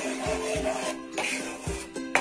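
Background music with a steady beat, about two beats a second, under held melodic notes.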